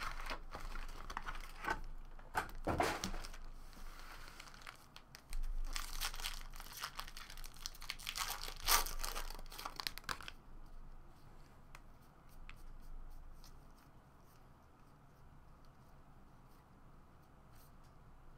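A foil wrapper on a 2013 Bowman Draft jumbo pack of baseball cards being torn open and crinkled, in loud rustling bursts through the first ten seconds or so. After that comes quieter handling of the cards, with a few faint clicks.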